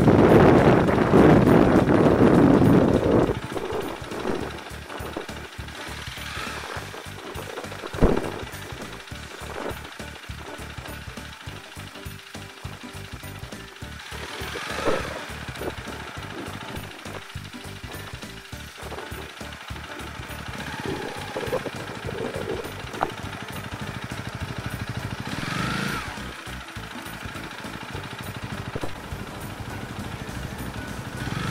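Honda Rebel 250 motorcycle engine running at low speed with a rapid, even pulse as the bike rolls slowly over a bumpy gravel track. It is louder and rougher for the first three seconds, and a single sharp knock comes about eight seconds in.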